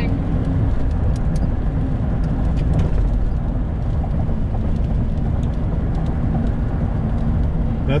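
Steady road noise inside a moving car's cabin: a low tyre and engine rumble at highway speed.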